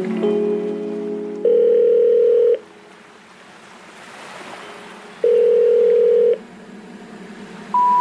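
Telephone tones in an electronic track: after a few synth notes, two long steady beeps about a second each with gaps between them, like a ringback tone. Near the end come three short beeps stepping up in pitch, the special information tone that comes before a 'number not in service' message.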